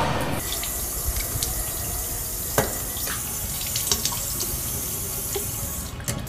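Water running from a bathroom sink faucet into the basin, a steady hiss that starts about half a second in. A few small clicks are heard over it, the most distinct about halfway through.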